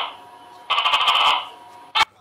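Gecko calling: a short burst of rapid clicking chirps, about two-thirds of a second long, starting just under a second in.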